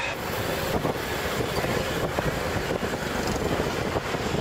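Steady street traffic noise of motor scooters and cars, with wind on the microphone as it moves along the road.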